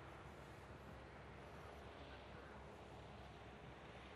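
Near silence: faint, steady outdoor background noise.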